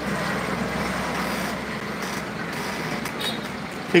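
Steady road-vehicle noise, an even hum and hiss with no distinct events.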